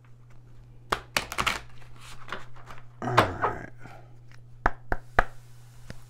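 A deck of tarot cards being shuffled by hand: bursts of flicking and riffling card edges about a second in and again around three seconds, then three sharp card snaps near the end. A steady low hum runs underneath.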